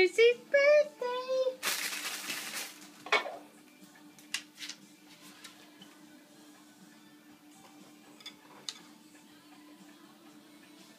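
Domestic cat yowling in wavering, drawn-out tones, then giving a sharp hiss a little under two seconds in, with a shorter spit just after, as it swipes at a dog's tail; a few faint clicks follow.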